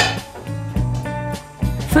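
Background music with a plucked guitar and a repeating bass line, and a single sharp metal clank of cookware on the range at the very start.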